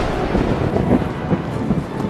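Steady low rumble from a thunder sound effect laid under the hooded wizard's lightning magic.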